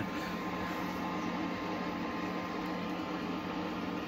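Steady hum and hiss of a running home distillation setup, with a faint constant tone in it.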